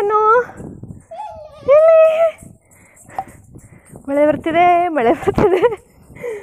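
A woman's voice making drawn-out, high-pitched vocal sounds and laughing, without clear words, in three bursts.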